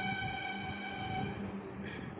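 A long horn blast, one steady pitched note rich in overtones, that fades out near the end.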